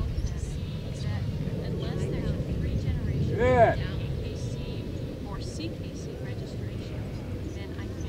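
A steady low rumble runs throughout, and about three and a half seconds in there is one short, loud shouted call from the handler, a command to the herding dog.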